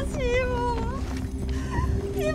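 Background music with a high, wailing lead line that glides downward in the first second, breaks off, and comes back near the end over steady sustained low tones.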